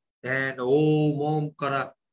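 A man's voice holding a long, steady, chant-like note for about a second, followed by a short second syllable.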